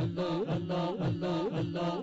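Men's voices chanting Sufi zikr of Allah's name through microphones and a PA loudspeaker, in a steady rhythm of about two chanted phrases a second, each falling in pitch.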